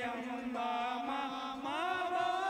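A voice sings a drawn-out devotional chant over music, with long wavering notes. The voice glides upward near the end.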